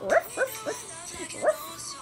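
Four short, high yips like a small puppy's, each sliding sharply up in pitch, over faint background music.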